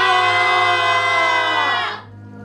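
Several voices together in one long, loud wailing cry, held through and sagging slightly before breaking off at the end.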